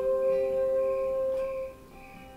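Acoustic guitar and Casio keyboard holding a sustained chord. The held notes stop sharply near the end, leaving much quieter playing.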